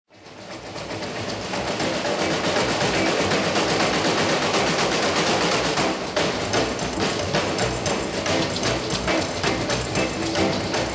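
A live band of upright bass, drums and electric guitar playing, fading in over the first two seconds. From about six seconds in, a fast, clicking beat comes through clearly.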